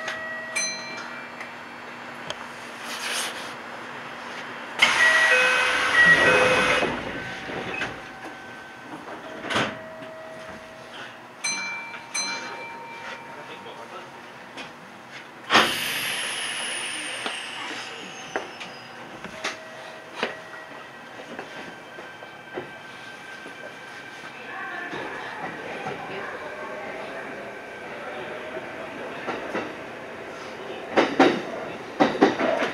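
Kintetsu Nara Line electric train standing at a station platform and then pulling away, rolling over the points near the end. Short tones and clicks are scattered through it, with a loud patch about five seconds in and a high tone that falls in pitch about sixteen seconds in.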